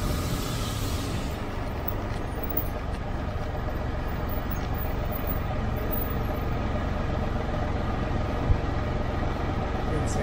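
Can-Am Spyder RT three-wheeler idling steadily while stopped in a toll lane, heard from the rider's seat. A rush of wind noise dies away in the first second or so as it rolls to a stop, and there is a single short tick near the end.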